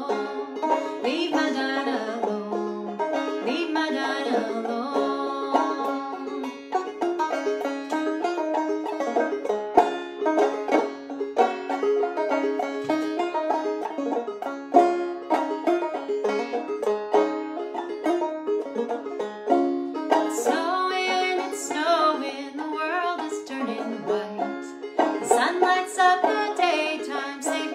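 Banjo picked in a steady rhythm, with a woman singing over it at the start and again through the last several seconds.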